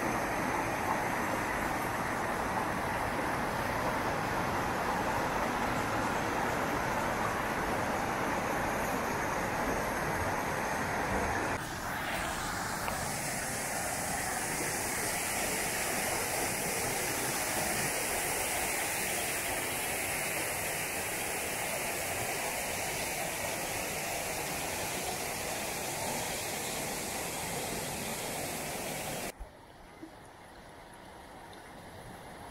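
Steady rush of a mountain creek and waterfall tumbling over rocks. The sound changes abruptly about twelve seconds in, turning hissier, and drops away suddenly near the end.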